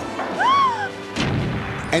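Cartoon battle sound effects on a film trailer's soundtrack: a short high tone that rises and then falls, followed about a second in by a boom.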